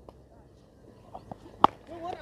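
A single sharp knock of a cricket bat striking the ball about one and a half seconds in, over faint open-air background.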